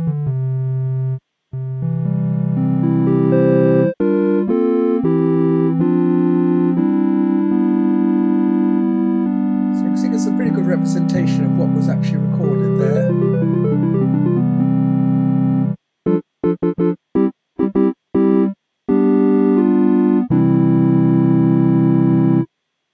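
Sonic Pi's triangle-wave (:tri) synth playing back a recorded MIDI keyboard performance, loud at this point: held chords, a quick run of higher notes about ten seconds in, then several short stabbed chords and a final held chord.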